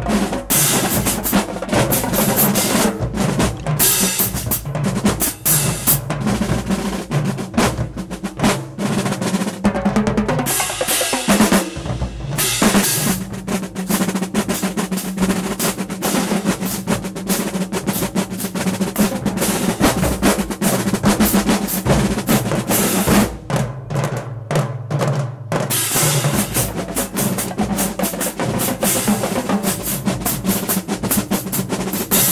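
Marching drumline of snare drums, tenor drums, bass drums and crash cymbals playing a loud, dense cadence without pause. There is a brief break in the pattern partway through, and a stretch of separate accented hits with short gaps between them a little past two thirds of the way.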